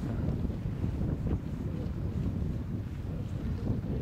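Wind buffeting the microphone: an uneven low noise that runs on steadily.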